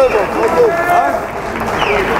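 Men's voices talking and calling out, several overlapping at once.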